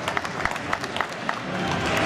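Audience applauding, with many separate hand claps heard over the crowd's noise.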